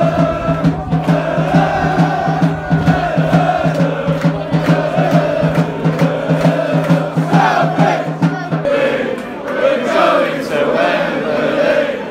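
Voices singing in unison over a steady, fast pulsing beat of about five a second; the beat stops about three-quarters of the way through while the singing carries on.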